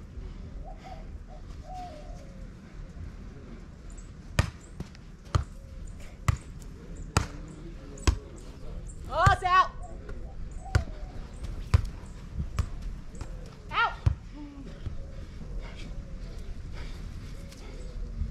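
A volleyball rally: a string of sharp slaps of hands on the ball, starting about four seconds in and running to about fourteen seconds, with two short voiced cries among the hits.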